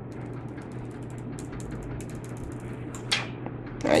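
Protective plastic film being peeled off a smartphone screen: a steady run of fine crackles as the film comes away, with one brief louder sound about three seconds in.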